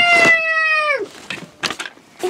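A single long, high-pitched cry held at a nearly steady pitch for about a second, tailing off about a second in, followed by a few short knocks near the end.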